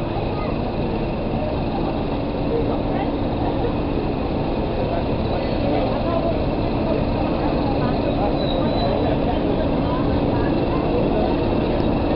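Class 31 diesel locomotive's English Electric V12 engine running steadily at low power as the locomotive creeps slowly along the platform, a steady hum.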